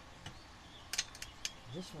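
A few sharp metal clicks and ticks about a second in, from a screwdriver prying at a carburetor's throttle linkage.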